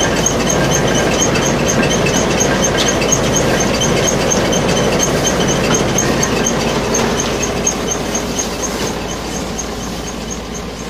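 Tractor-powered crop thresher running under load as dried plants are fed into its hopper: a loud, steady mechanical din with an even rapid ticking, about four or five beats a second. It eases off a little near the end.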